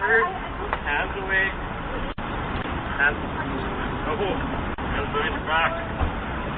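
Voices of a police officer and the person being arrested, picked up by a Ring doorbell camera's microphone over a steady hiss of street noise. The audio cuts out briefly twice.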